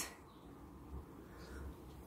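Near silence: quiet room tone, with a couple of very faint soft sounds about a second in and around a second and a half.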